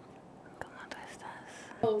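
Faint whispering. A voice starts speaking aloud near the end.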